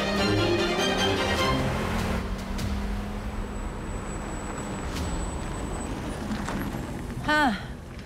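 Dramatic score fading out over the steady low rumble of a car engine driving off, which slowly dies away; a voice calls out briefly near the end.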